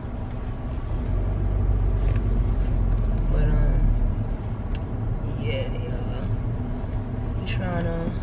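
Steady low rumble of a car's engine and tyres on the road, heard from inside the cabin while driving, swelling a little around the middle. A few brief snatches of voice come through over it.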